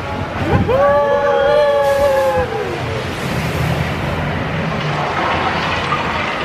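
A voice holding one long high 'ooh' for about two seconds, rising at the start and sagging at the end, over the steady rushing noise of a dark-ride boat on water.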